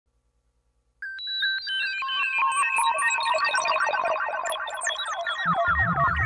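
Electronic synthesizer music: after about a second of silence, bright beeping sequenced synth notes start abruptly and build into fast cascading arpeggios, with a low bass line joining near the end.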